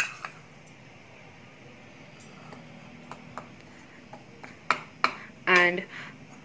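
Metal spoon knocking and scraping against mixing bowls while spooning flour: a sharp clink at the start, then a few light scattered taps in the second half.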